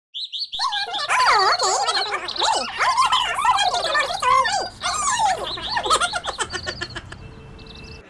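Birds chirping and warbling in a busy, overlapping chorus of quick gliding notes that thins out and stops about seven seconds in.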